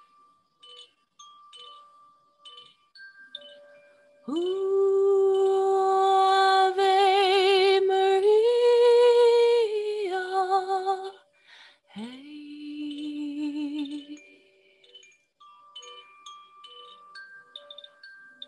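Hand-held bamboo chime swaying, giving sparse soft ringing tones. About four seconds in, a woman's wordless singing enters on long held notes with vibrato, stepping up in pitch and back, then a shorter, lower note a second later.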